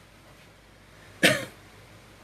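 A man coughs once, a single short cough about a second in.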